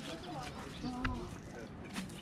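Faint background talk from people nearby, with no clear words, and a brief click about a second in.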